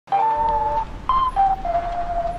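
Opening of a lo-fi music track: a simple lead melody of a handful of held notes, stepping down to a longer note near the end, over a steady low hum.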